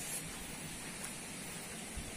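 Steady, fairly quiet outdoor background noise: an even hiss with no distinct events.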